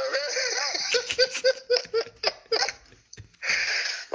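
A man laughing heartily: a long run of quick "ha" pulses that tapers off after nearly three seconds, followed by a breathy rush of air near the end.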